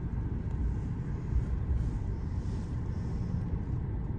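Steady low rumble of a car's engine and running gear, heard from inside the cabin.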